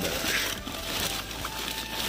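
Thin plastic sheet and bedding rustling and crinkling as they are handled and shifted around a small dog.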